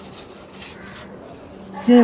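Soft rubbing of tissue against a throttle body's metal casing as it is scrubbed clean. A man says "ok" near the end.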